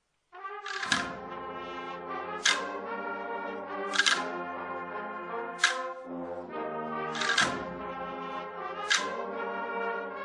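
A cornetas y tambores band (bugles and drums) playing a Holy Week procession march. After a brief silence it comes in with sustained bugle chords, punctuated by percussion strikes about every second and a half.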